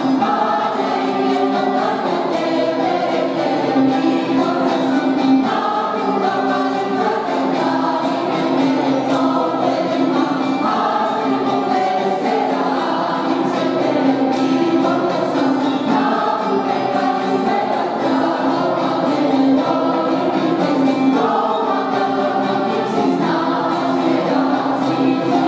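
Mixed choir of men and women singing a traditional Greek Christmas carol (kalanta), with a steady low note held beneath the melody.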